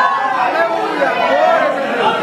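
Many voices speaking at once, the overlapping chatter of a congregation in a large hall.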